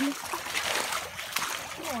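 Shallow creek water splashing as feet wade through it, with a couple of sharper splashes.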